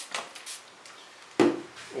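A single short knock about one and a half seconds in, with faint handling noises before it.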